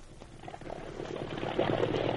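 Radio sound effect of a small motor launch running at full throttle, its engine and water noise fading in about half a second in and growing steadily louder.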